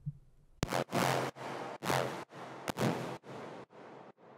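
Electronic dance music playing back from an FL Studio project: noisy, hissing hits land on each beat, about two a second, and grow steadily quieter, with a couple of sharp clicks among them.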